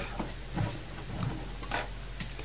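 Faint handling noise: a few light knocks and rubs from the metal case of an opened computer power supply as it is turned over in the hands.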